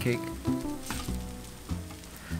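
Grated potato rosti frying in bubbling butter in a non-stick pan, a steady sizzle. Background music with held notes plays over it.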